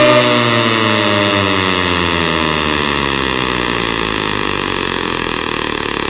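Electronic sound-check effect in a DJ mix: a sustained, buzzy synthesised tone rich in overtones, gliding slowly down in pitch while it fades a little.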